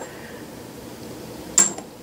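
A small piece of scrap steel plate set down on a backing plate atop a lathe chuck: one short metallic clink about a second and a half in, over quiet room tone.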